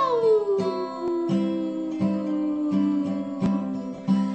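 A woman sings one long held note that slides slowly down in pitch, over an acoustic guitar strummed in a steady rhythm.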